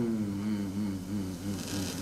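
A man's long, low hum through a microphone and hall PA, wavering slightly in pitch, over a faint steady electrical hum.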